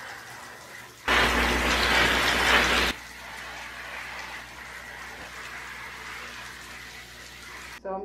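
Shower water running onto potted houseplants in a bathtub, with a much louder spray lasting about two seconds, starting about a second in.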